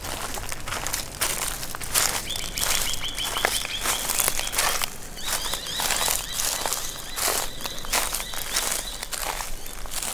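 Footsteps crunching on gravel, a step roughly every half second to second, as someone walks slowly around a parked car. A thin, high, steady tone sounds in two stretches, from about two seconds in and again from about five to nine seconds.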